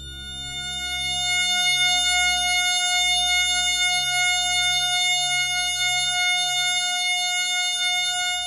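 A synthesized F-sharp major chord of steady pure tones at 720, 1440, 2160 and 3600 cycles a second, the angle totals of the tetrahedron, octahedron, cube and icosahedron, fading in, held, and fading near the end over a faint low pulsing hum.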